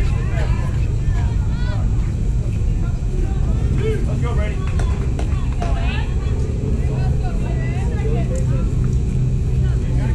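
Indistinct voices of spectators and players chattering and calling out, none of it clear speech, over a steady low rumble.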